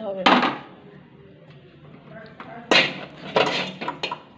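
Aluminium kadai knocking and scraping on the metal pan-support grate of a gas stove as it is set down and settled on the burner, with a few sharp clanks near the end.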